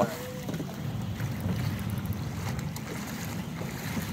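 Steady low rumble and wash of water and wind aboard a fishing boat, with a few faint knocks.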